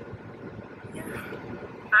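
Steady low rumble of background noise inside a car cabin, with a quiet spoken "yeah" about a second in and louder speech starting at the very end.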